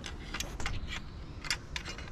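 About half a dozen light, separate clicks and ticks from hands working the wiring connectors and metal hub on the back of a removed steering wheel.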